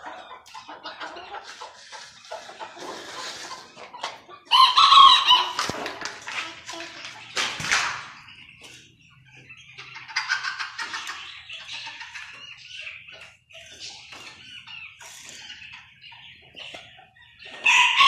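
Roosters crowing and chickens clucking in small pens. The loudest crow comes about four and a half seconds in, with further crows around ten seconds and right at the end.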